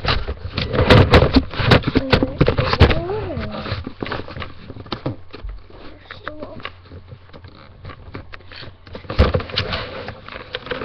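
Handling noise from a handheld camera being moved around: knocks, rubs and scrapes against its body, loudest and busiest in the first three seconds and again near the end.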